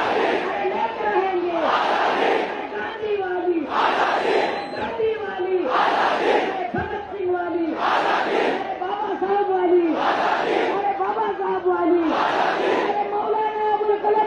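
A large crowd of protesters chanting a slogan in unison over and over, the massed shout rising about every two seconds.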